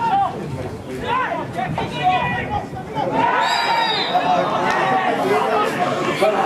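Men's voices calling and shouting over one another at an outdoor football match, with one loud drawn-out shout about three seconds in.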